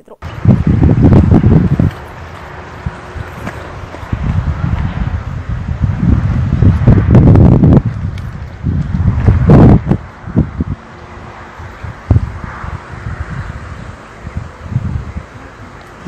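Wind buffeting the camera microphone in loud, irregular low rumbling gusts, with faint voices of a group of people underneath.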